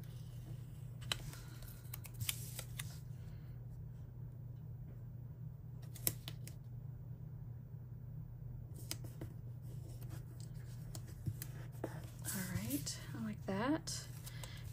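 Paper stickers being handled: soft rustles and small clicks of sticker backing being peeled and stickers pressed onto a planner page, quiet for a few seconds in the middle, over a steady low hum.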